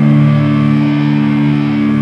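Electric guitar holding one sustained chord that rings out steadily, with no drums.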